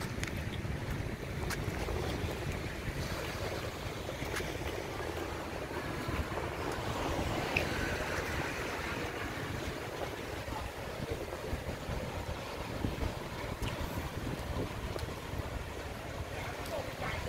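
Seaside outdoor ambience: wind rumbling on the microphone over small waves washing on the sand, with distant road traffic.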